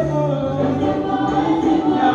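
A choir singing gospel music, with sustained low notes underneath.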